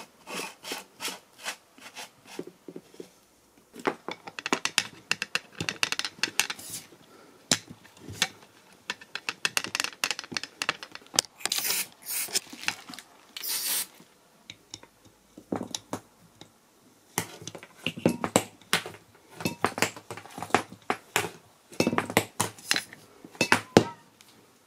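Parts of a vintage hand tyre pump being fitted back together by hand: a string of irregular clicks, taps and scrapes. Two short hisses of an aerosol lubricant spray come about halfway through.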